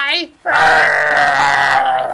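A man's voice making one long, low, strained groan lasting over a second, starting about half a second in and trailing off near the end.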